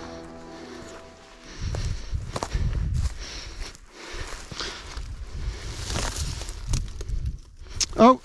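Footsteps through long grass, with rustling and irregular low thumps. Background music fades out in the first second and a half.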